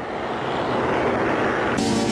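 A vehicle's rushing noise swelling steadily louder, cut off suddenly by music near the end.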